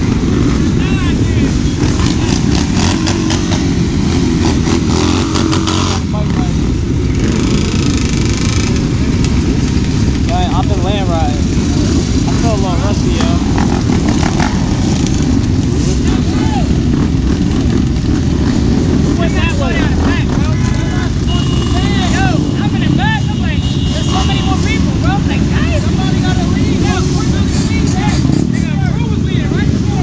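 Many dirt bikes and ATVs running close by, their engines idling with repeated revs that rise and fall in pitch.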